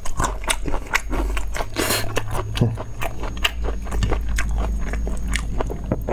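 A person chewing and biting food close to a clip-on microphone: a dense, unbroken run of mouth clicks and smacks.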